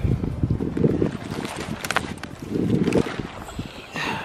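Wind buffeting the microphone in irregular gusts, with rustling and a sharp click about two seconds in as a shed deer antler is picked up off the forest floor.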